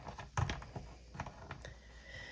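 Plastic joints of a Jada Street Fighter Ryu action figure clicking as its leg is moved by hand. A few light clicks, the loudest about half a second in.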